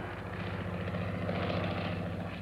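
Propeller aircraft engine droning steadily.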